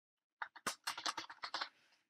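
Typing on a computer keyboard: a quick run of about ten keystrokes starting about half a second in.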